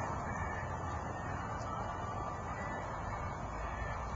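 Steady low background rumble with a faint hiss and no distinct events.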